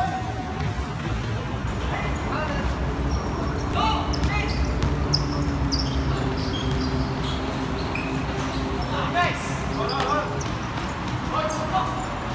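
A basketball bouncing on a hard court as it is dribbled and played, with players' voices calling out now and then over a steady background rumble.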